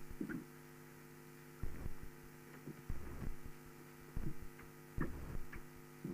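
Chalk knocking and scraping on a blackboard in short irregular strokes while writing, over a steady electrical mains hum.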